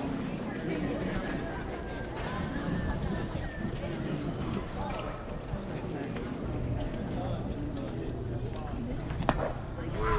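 Faint chatter of spectators in baseball stands, with one sharp crack about nine seconds in.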